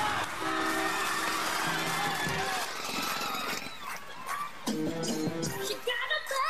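Music from a recorded TV talent-show performance that starts abruptly at full level. Held pitched tones sit over a dense wash of noise in the first few seconds.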